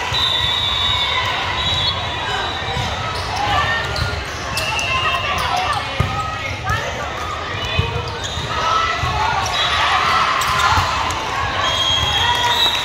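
Volleyball game sounds in a large, echoing sports hall: the voices of players and spectators throughout, with two sharp hits of the ball, about six seconds in and again just before eight seconds.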